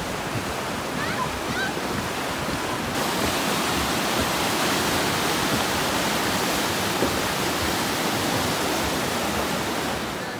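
River rapids rushing over rocks: a steady, even wash of white water that grows fuller about three seconds in.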